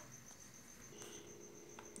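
Near silence: room tone with a faint, steady high-pitched trill, joined about a second in by a faint low hum.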